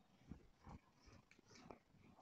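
Near silence, with a few faint short rubs and light knocks of a whiteboard eraser wiping marker off the board.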